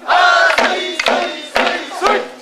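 Men's voices chanting and calling out in the song of a bō-odori stick dance, with about three sharp clacks of wooden staffs striking.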